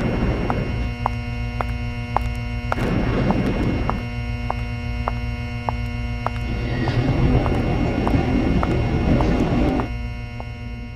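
A droning soundtrack of steady humming tones with a regular click about twice a second. Swells of rough, low rumbling noise come in around the middle and again over the last few seconds.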